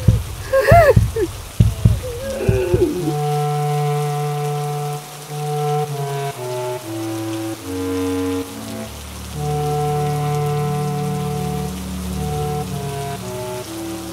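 Rain sound effect under slow, held ominous chords that change every second or two. In the first few seconds, short wavering sounds glide up and down before the chords come in.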